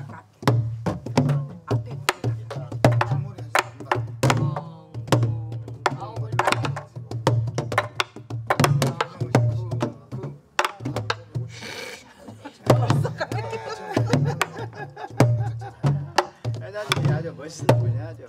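Soribuk, Korean pansori barrel drums, played with sticks by a group: low thuds on the drumhead mixed with sharp wooden clicks of the stick on the drum's wooden shell, in a repeating rhythmic pattern throughout.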